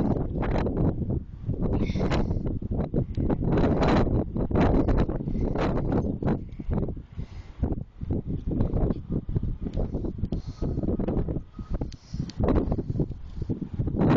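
Wind buffeting a phone's microphone in uneven gusts, mixed with rustling and short knocks from handling the phone.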